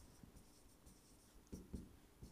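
Faint stylus writing on an interactive touchscreen board: soft taps and strokes of the pen on the screen, with a couple of slightly louder taps about one and a half seconds in.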